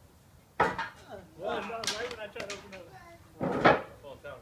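Loud wordless human vocal sounds: a sudden shout about half a second in, a stretch of voicing in the middle, and another short loud burst near the end.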